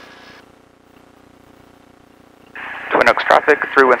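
A light aircraft's engine and propeller running steadily at low power, heard faintly as a hum through the headset intercom. About two and a half seconds in, a transmit hiss opens and a pilot's radio call begins.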